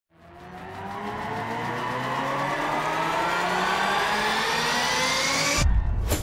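Cinematic riser sound effect: a pitch sweep that climbs steadily and swells in loudness for about five seconds over low sustained tones. It then cuts off suddenly into a deep bass hit near the end.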